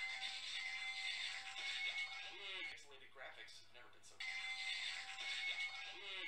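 Lo-fi sound-collage loop: a hissy haze with a few steady high tones and a brief garbled, voice-like fragment, the whole pattern starting over about four seconds in.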